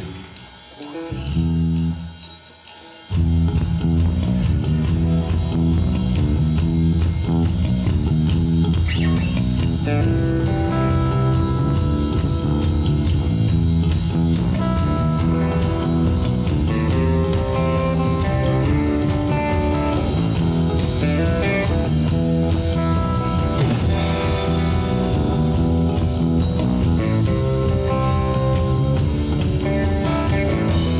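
Live rock band playing an instrumental passage on electric guitar, bass guitar and drum kit. A few quiet low notes come first, and about three seconds in the full band comes in together and plays on at a steady loud level.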